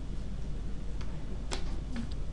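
A few sharp computer-mouse clicks, the loudest about a second and a half in, over a steady low hum.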